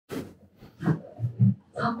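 A few short grunts and groans of effort from a person, mixed with breathy rustling, as a patient with back pain gets down onto a chiropractic table; a word of speech starts near the end.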